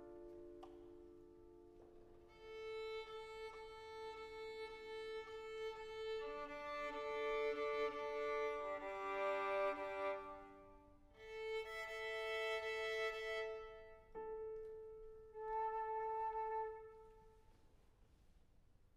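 Violin being tuned: a held open A, then open-string double stops in fifths (D–A, G–D, A–E), then the A again, each held a few seconds with short breaks.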